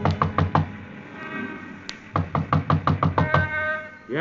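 Knocking on a door, a radio-drama sound effect: a few quick knocks, a pause, then a longer run of rapid knocks.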